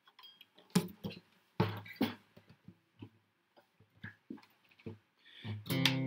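Acoustic guitar strings plucked one at a time with pauses between, several single notes while the tuning is checked. Near the end a strummed chord starts ringing.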